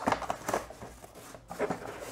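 Plastic bag of toy accessories and a cardboard box being handled by hand: light crinkling and rustling, broken by a few soft clicks.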